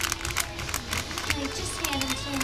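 Shiny metallic gift wrap crinkling and rustling in quick, irregular crackles as hands dig through it, with faint music underneath.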